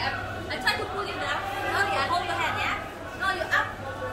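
Indistinct voices chattering in a large indoor hall, over a steady low hum.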